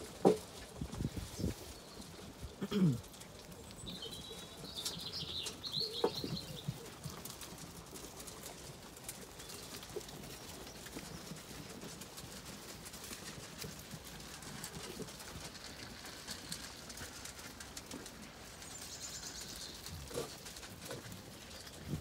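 Flock of Zwartbles sheep feeding at a trough, with a few knocks and a short falling low sound in the first three seconds, then steady low-level shuffling. A bird sings a brief high trill about five seconds in, and other birds call faintly in the background.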